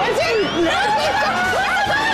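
A group of people laughing and calling out over one another, several voices at once.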